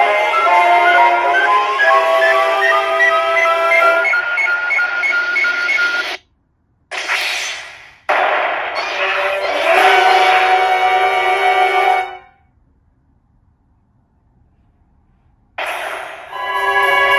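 Electronic music and effects from a Kyoraku CR Pachinko Ultraman M78TF7 machine during a 7–7 reach: a tune that climbs in steps, a brief cut-out, a burst, then more music. The sound drops to near silence for about three seconds before music starts again near the end.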